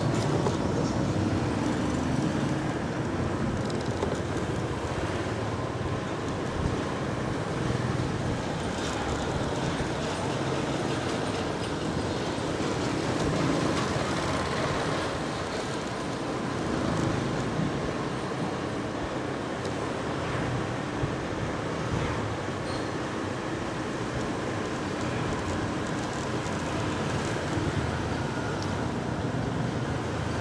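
Steady road noise from a motorbike riding through city street traffic: its engine and the rush of wind blend with other motorbikes passing close by.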